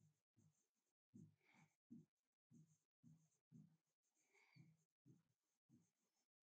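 Faint pen strokes on a writing board as words are written: a string of about ten short rubs and squeaks.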